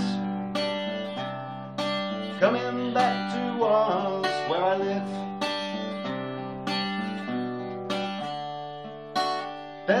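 Acoustic guitar chords strummed about once a second, each ringing out: an instrumental break in the song's accompaniment.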